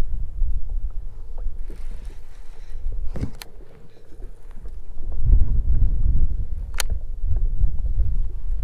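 Wind buffeting the microphone in a gusty low rumble, strongest about five seconds in, with a few sharp clicks from handling a baitcasting reel, one a little past three seconds and one near seven.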